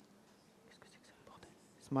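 Quiet room with faint whispered speech, ending as a man starts to say a word aloud.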